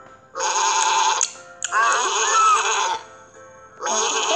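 Two cartoon sheep bleats from an animated storybook, each about a second long and wavering in pitch, over light background music.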